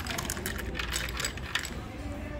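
Iced tea poured from a glass pitcher into a glass full of ice, the ice cubes clinking in a rapid run of small clicks that thins out about a second and a half in.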